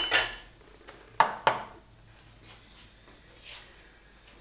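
A spoon knocking against a stainless steel cooking pot: a sharp clink at the start and two more a little over a second in, each with a brief ring.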